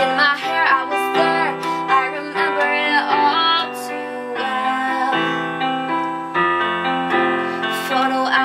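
Portable electronic keyboard played with a piano voice, both hands sounding sustained chords that change every second or so. A female voice sings a few wordless, wavering notes over it near the start and again around three seconds in.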